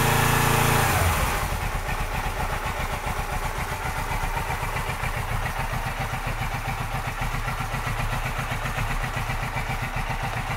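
2007 Suzuki GS500F's parallel-twin engine, just started and running cold. A louder, steady sound lasts about a second, then the engine settles into an even, pulsing idle.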